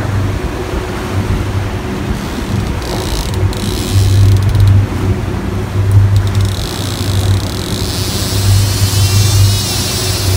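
Fishing boat's engine running under way, a low drone that swells and fades, over the rush of wind and water. A higher hiss joins in about two-thirds of the way through.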